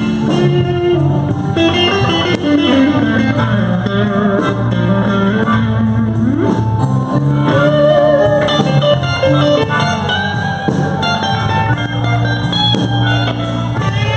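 Live blues band playing an instrumental passage: electric guitar, bass guitar and drums, with a harmonica played cupped against the vocal microphone.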